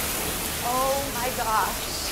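Grease fire in a stovetop pan flaring up into a large fireball: a steady rushing noise of flames that slowly eases off. A voice briefly exclaims about a second in.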